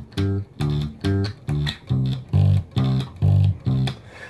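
Music Man electric bass guitar played through an amplifier: a steady country/bluegrass-style bass line of plucked notes, about two and a half a second, alternating between a low note and a higher one.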